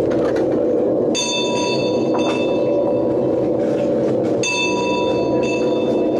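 A steady low drone, with two clear metallic bell-like strikes about three seconds apart, each ringing for about a second with high, unevenly spaced overtones.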